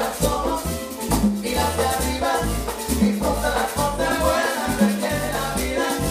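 Live salsa band playing, with congas, bass guitar and saxophone over a steady percussion groove.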